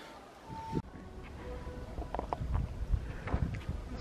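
Wind buffeting the microphone outdoors: a low, gusty rumble that swells and eases, with a few faint distant sounds over it.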